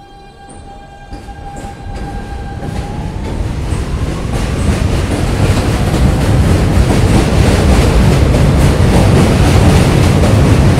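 R160B subway train with Siemens propulsion pulling out of the station. A steady electric whine from its traction equipment begins to rise in pitch about three seconds in. Meanwhile the rumble and clatter of the wheels grow steadily louder as the train gathers speed.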